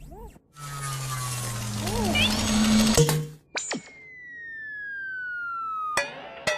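Cartoon droid sound effects: a whirring noise with short electronic chirps and beeps, a sharp click about three seconds in, then one long whistle that slowly falls in pitch.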